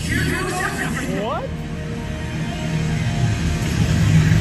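Dramatic show soundtrack over a ship's deck speakers: music with voices over it and a few rising swoops about a second in.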